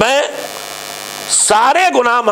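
Steady electrical mains hum, a buzz with a stack of even overtones, filling a pause between a man's spoken words. His voice returns about one and a half seconds in.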